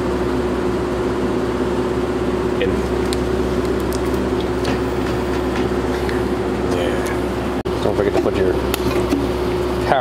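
Steady mechanical hum with one constant tone, like a fan or air-conditioning unit, with a few faint ticks; it cuts out briefly near the end.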